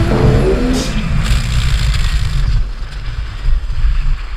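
Loud low rumble of wind buffeting the microphone and a snow tube sliding fast over packed snow, with a louder swell near the end. Music fades out in the first second.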